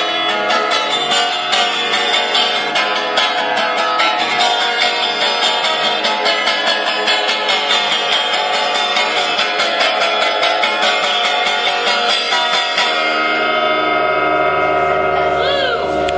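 Guitar strummed steadily through the instrumental close of a song, then a final chord left ringing from about thirteen seconds in.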